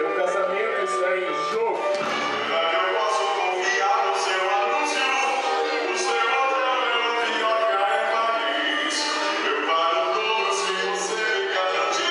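A song with a singing voice over music, steady and loud throughout.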